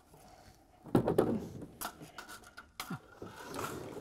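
Fragment screen being taken out of a fish egg sorter's top hopper: a few sharp knocks and scraping as the parts are handled, the loudest knock about a second in.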